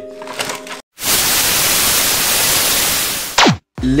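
An editing sound effect: about two seconds of loud, even hiss like TV static, ending in a quick falling whistle-like sweep, covering a cut in the footage.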